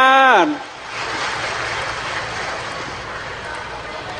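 A man's long, drawn-out call, held and then falling in pitch, cut off about half a second in; then a studio audience breaks into steady applause and cheering.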